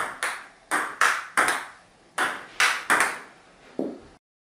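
Table tennis rally: the ball ticking back and forth between the paddles and the tabletop, about nine sharp clicks at an uneven pace, each with a short ring. Near the end comes a softer, duller knock.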